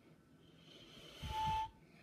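A person blowing a breathy mouth whistle that barely sounds: mostly rushing air, with a faint short whistle tone near the end before it cuts off. It stands for a toy engine's whistle that isn't working.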